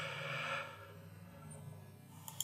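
A soft breath from the speaker, fading out within about half a second, followed by faint room tone with a low steady hum.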